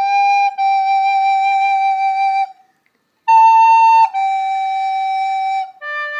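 Plastic soprano recorder playing slow, held single notes of a worship-song melody, with a brief break about two and a half seconds in. A higher note follows, it steps back down to the earlier pitch, and a lower note is held near the end.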